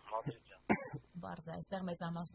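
A person speaking, broken about two-thirds of a second in by one short sharp sound, the loudest moment, after which the talk carries on steadily.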